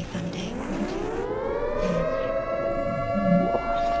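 Quiet breakdown in a dubstep track: a single siren-like synth tone rises in pitch over about the first two seconds, then holds steady without a beat.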